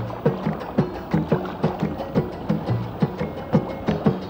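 Music carried by a steady drum rhythm, about three strokes a second, with low pitched drum tones.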